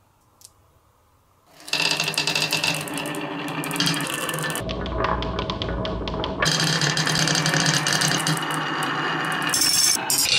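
Near silence, then after about two seconds a sudden, dense clatter of many marbles rolling down wooden wavy-groove slope tracks and knocking against the curved walls and each other. Around the middle it turns to a deeper rumble for a couple of seconds, then goes back to the bright rattling.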